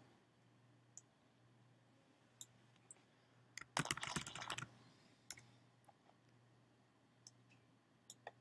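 Quiet typing on a computer keyboard: a short quick run of keystrokes about four seconds in, with scattered single clicks before and after, over a faint steady hum.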